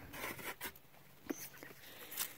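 Faint rustling and scraping of hands among tomato plants and fallen tomatoes in a wooden raised bed, with two light clicks or knocks.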